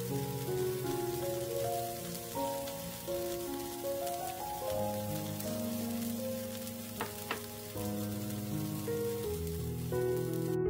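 Sauce-coated deodeok root strips sizzling steadily in oil in a nonstick frying pan, with two sharp ticks about seven seconds in. Soft background music with held piano-like notes plays under it.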